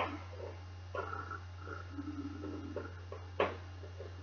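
Dry-erase marker writing on a whiteboard: faint short squeaks from the strokes, with a sharp tap about a second in and a louder one near the end, over a steady low electrical hum.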